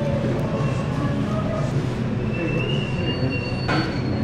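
Steady hum and clatter of a sandwich-shop kitchen behind the counter, with a brief high-pitched squeal in the second half and a short clatter near the end.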